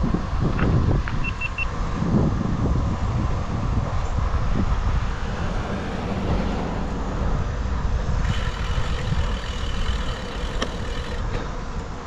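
Wind buffeting a bike-mounted action camera's microphone, with tyre and road rumble, while cycling along a street. Three short high beeps sound about a second in, and a thin high steady tone joins from about eight seconds.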